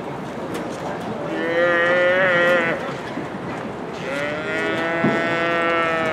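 A calf bawling twice: a long call just over a second in, then a longer one from about four seconds in. A short sharp knock sounds during the second call.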